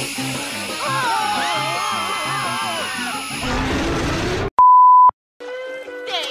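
Background music with a bass pattern and a wavering synth melody swells and cuts off suddenly. After a moment of silence comes a loud steady beep at a single pitch, about half a second long, and then new music starts near the end.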